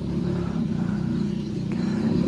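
Suzuki Satria 120 single-cylinder two-stroke engine idling steadily, a low even drone.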